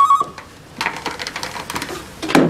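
Telephone ringing with a warbling double ring whose second burst cuts off about half a second in, followed by faint rustling and small knocks as the call is answered.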